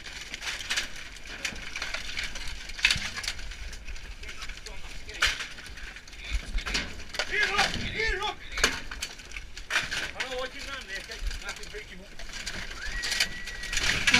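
Scrap window-frame sections clattering and clinking as they are shifted and dropped in a metal skip, with shouts now and then and a short high whistle-like tone near the end.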